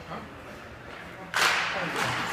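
Ice hockey faceoff: a sharp crack a little over a second in as the sticks clash at the puck drop. It is followed by sustained scraping of skates and sticks on the ice.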